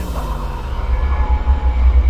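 A low, rumbling drone of horror-trailer sound design, slowly building in loudness. A tone slides down in pitch during the first second, and faint thin high tones sit above.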